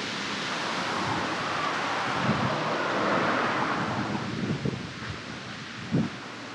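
Wind gusting over the microphone and through the trees, a steady rushing noise that swells in the middle and eases toward the end.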